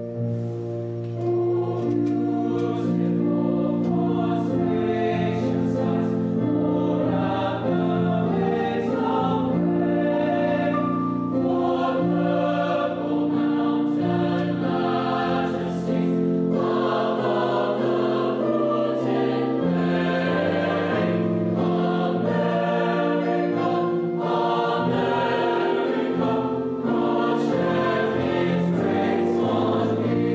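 A mixed choir of teenage boys and girls singing together in parts, the full choir coming in about a second in and carrying on steadily.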